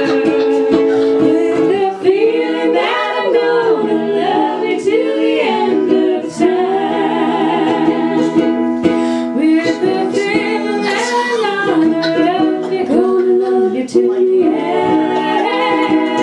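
Women's voices singing in harmony over a strummed concert ukulele, a live acoustic performance with long held notes.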